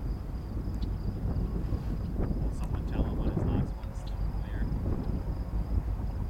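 Low, steady rumble of an approaching freight train's diesel locomotives, mixed with wind buffeting the microphone. Faint voices come through about two to four seconds in.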